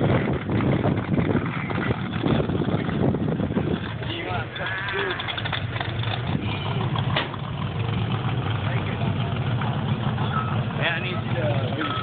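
A vehicle engine running steadily, with people talking around it; a reversing beeper starts sounding near the end.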